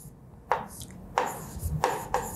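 Marker pen writing on a board: three short scratchy strokes, a little more than half a second apart.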